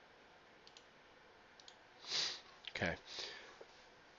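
Two faint computer-mouse clicks a second apart, then a sharp breath in just before a spoken "okay" and a softer breath after it.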